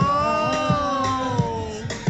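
Kizomba music with a slow, steady beat, its thumps about 0.7 s apart. Over it a long note slides up and is held, sagging slowly in pitch and stopping shortly before the end.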